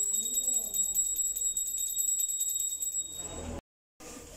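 Puja hand bell rung rapidly and continuously during a temple consecration ritual, a steady high ringing with a fast even shimmer, cutting off suddenly near the end.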